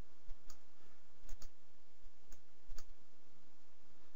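Computer mouse clicking: a handful of short, sharp single clicks, two of them in quick pairs, over a faint steady background hum.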